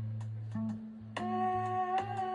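Live rock band playing a slow song: a steady bass line under sparse drum ticks. About a second in, a high male voice comes in on a long held note.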